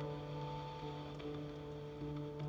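Tenor saxophone and piano playing a slow jazz passage, long notes held steady with almost no movement.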